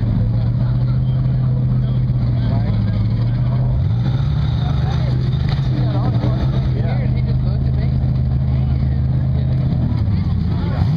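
Competition rock buggy's engine running under throttle at high, steady revs, stepping up in pitch about four seconds in and holding there.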